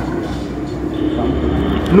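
A steady low mechanical rumble, with a faint high whine coming in about halfway through.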